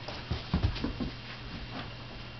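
A dog moving about at play: a quick run of soft thumps and scuffles from its paws and toy in the first second, then quieter.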